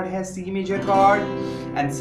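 Cutaway acoustic guitar: a chord strummed about a second in and left ringing.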